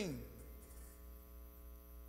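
Steady low electrical mains hum, with faint steady tones above it, in a pause between words. The end of a man's spoken word fades out right at the start.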